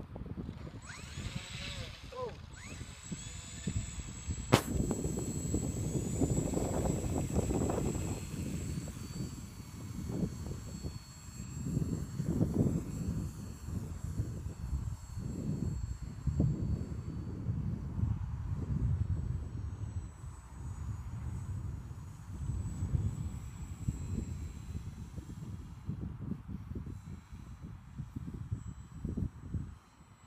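Small radio-controlled autogyro with an electric motor taking off and flying, heard as a faint high whine over an uneven low rumble that swells and fades. A sharp click comes about four and a half seconds in.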